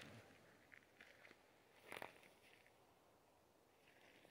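Near silence, with a few faint soft ticks and one brief faint rustle about halfway through.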